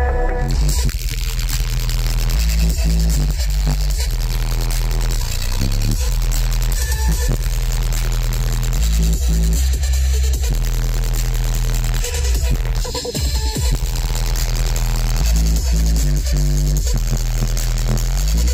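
Bass-heavy electronic music playing loud on a car audio system, heard inside the cabin, with the deep bass of two 12-inch Audio Dynamics 2000 series subwoofers dominating.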